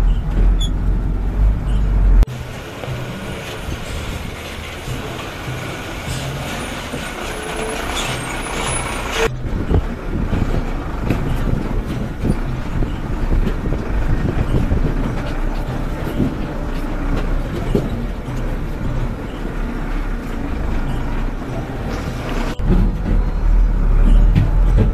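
Loaded small utility vehicle's engine running as it crawls over a rough, rocky dirt track, with frequent knocks and rattles from the body and suspension. The sound changes abruptly about two seconds in, again near the middle, and near the end.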